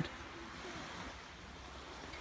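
Faint, steady outdoor background noise with no distinct sound event.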